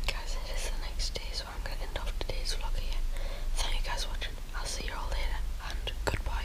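Whispering, with no clear voiced words, over a steady low hum.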